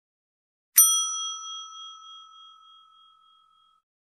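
Notification-bell sound effect from a subscribe-button animation: one bell ding about a second in, ringing out and fading away over about three seconds.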